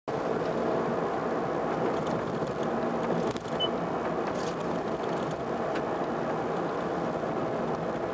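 Steady road and engine noise of a car driving along a city street, heard from inside the car.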